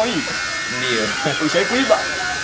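Indistinct voices, with a steady electric buzz underneath.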